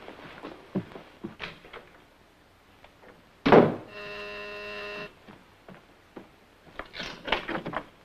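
Electric door buzzer sounding one steady, even tone for about a second, a little after a short loud burst; a visitor is ringing at the door. A few light clicks follow near the end.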